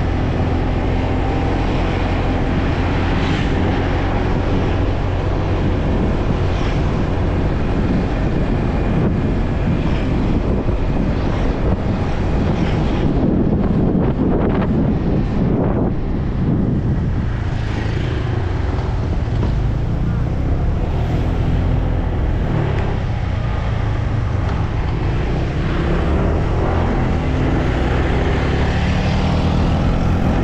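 Motorcycle being ridden at low speed: its engine running steadily under wind and road noise on the rider's microphone, swelling louder for a few seconds about halfway through.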